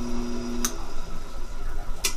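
Electric motor of an Atlas-built drill press running slowly on its two-step pulley with a steady hum, then switched off with a sharp click about two-thirds of a second in.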